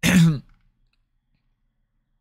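A man's short sigh, breathy and falling in pitch, lasting about half a second.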